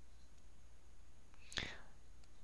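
Steady low electrical hum and faint hiss from the recording, with one short breathy sound, a breath or whispered syllable from the lecturer, about one and a half seconds in.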